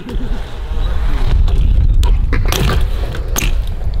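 A BMX bike rolling on concrete, with a few sharp knocks as it strikes a rail and lands, under a loud low rumble.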